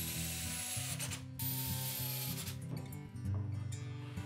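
Cordless drill driving screws into plywood, running in two short bursts with a brief pause between them, followed near the end by a run of rapid clicks.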